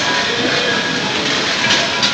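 Loud, steady crowd noise: many voices blending into one even hubbub, with no single word standing out.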